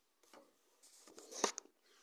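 Handling noise from a handheld phone as it is moved and turned: a faint tick, then a short run of rustles and clicks that is loudest about one and a half seconds in.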